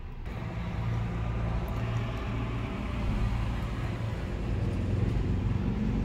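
Road traffic heard from inside a car: a low steady rumble with a wash of tyre noise that slowly grows louder.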